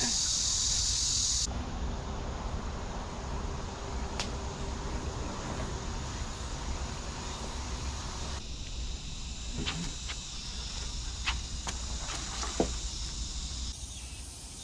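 Insects droning steadily in the trees, a loud high buzz for the first second and a half that drops away suddenly. After that comes a fainter, rougher outdoor background with a low rumble and a few sharp clicks.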